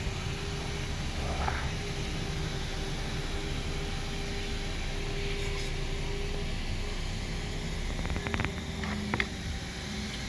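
Steady mechanical hum of running machinery, with a few light clicks and knocks of handling near the end.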